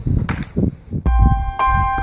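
A bell-like electronic chime jingle with a low bass note starts about a second in, its tones ringing on. Before it, outdoor batting-practice sound with a sharp knock, a bat meeting a tossed ball.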